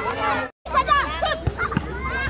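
Several voices of futsal players and onlookers calling and chattering over one another, cut by a brief gap of silence about half a second in. A couple of short dull thumps stand out around the middle.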